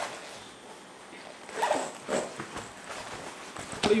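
Zipper on an ASUS ROG nylon laptop backpack being pulled, in short zip strokes about one and a half to two seconds in and again near the end.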